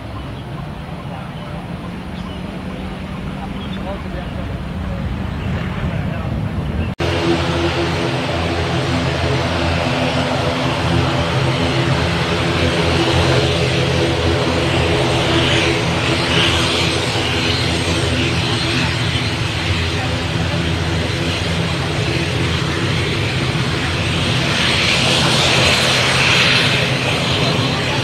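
Jet engine noise from a twin-engine business jet climbing out after takeoff. About seven seconds in it cuts abruptly to a UNI Air ATR 72-600 turboprop's engines and propellers running with a steady hum of several tones, growing louder toward the end.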